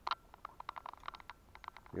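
A quick, irregular run of small clicks and taps, about a dozen in under two seconds, from small objects being picked up and handled on a table.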